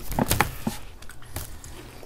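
Snacking sounds: a few short crunches and clicks in the first second as caramel popcorn is handled and eaten, then quieter.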